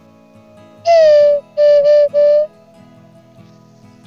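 Handmade wooden bird call (pio) blown by mouth: one longer, slightly falling whistled note, then two shorter notes at the same pitch.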